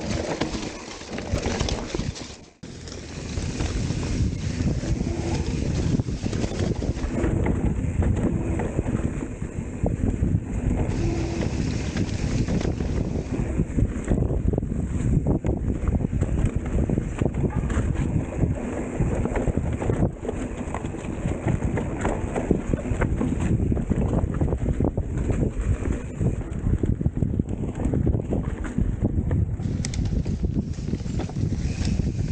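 Wind buffeting the microphone of a camera riding on a mountain bike, with dense rattling and knocks from the bike over a rough dirt trail. The sound drops out briefly about two and a half seconds in.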